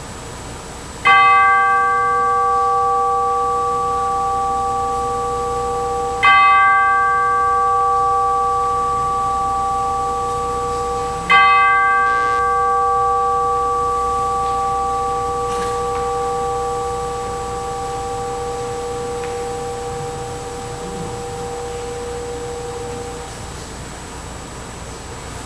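A bell struck three times, about five seconds apart, each stroke ringing on with a slowly fading tone; the last stroke rings for about twelve seconds before dying away.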